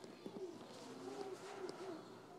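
A baby cooing, a run of short, wavering coos close to the microphone.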